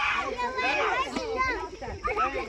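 A group of children shouting and chattering excitedly all at once, many high voices overlapping with no single clear word.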